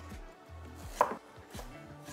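Chef's knife slicing ginger into thin matchsticks on a wooden cutting board: a few knocks of the blade against the board, the loudest about halfway through.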